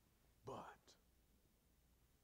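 Near silence, room tone, broken about half a second in by a man saying one short, quiet word, "But".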